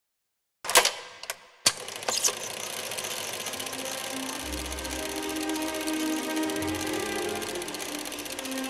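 Intro music: a few sharp clicks about a second in, then a steady rapid mechanical clatter with music over it, low bass notes coming in about halfway through.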